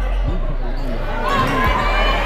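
Basketball game play in a gym: the ball being dribbled on the court under the steady murmur of the crowd in the hall.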